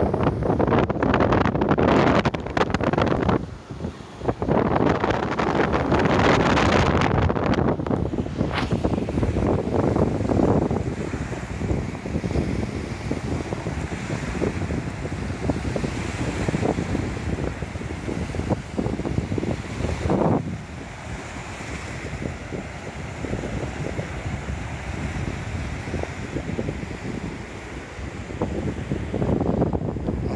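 Wind buffeting the microphone in loud gusts, with a brief lull about four seconds in, then easing to a steadier rushing of breaking surf and wind that grows quieter about twenty seconds in.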